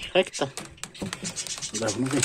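Scratching and irregular sharp clicks of a wire and hands working against wooden boards, as a small board is worked loose from a wooden nest box.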